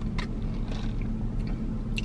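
A person taking a drink of an iced beverage from a plastic cup, with a few faint mouth and swallowing clicks, over a steady low hum in a car cabin.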